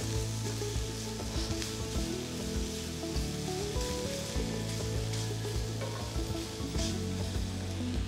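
Vegetables (button mushrooms and carrot) sizzling as they fry in a pan, stirred now and then, with a few light utensil clicks.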